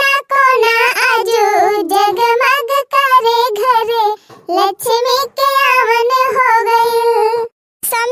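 A high, child-like cartoon voice singing a folk-style birthday congratulation song (badhai geet), holding long wavering notes with short breaks about three seconds in, around four seconds and near the end.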